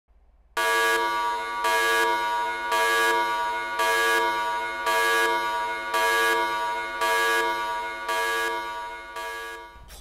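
A sustained, horn-like electronic tone with a steady pitch, swelling about once a second. It starts about half a second in and stops just before the end.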